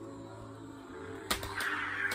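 Toy lightsabers in a mock duel: a steady low electronic hum, then a sharp knock a little past a second in as the blades strike, followed by a brief buzzy clash sound.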